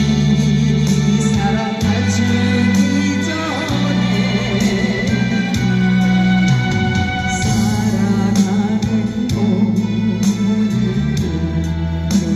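A woman singing a slow song into a microphone, her voice wavering in vibrato, over amplified instrumental accompaniment with sustained bass notes and a steady beat.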